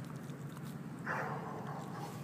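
A German shepherd gives one short vocal sound about a second in, falling in pitch and lasting under a second.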